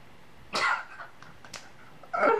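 A man gives one short, breathy cough-like burst of breath about half a second in, followed by a faint click about a second later.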